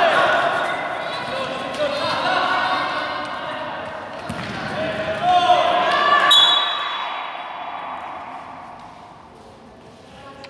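Players and spectators shouting and calling in an echoing gym hall, loudest a little past the middle and then dying away. A futsal ball bounces and is kicked on the court floor.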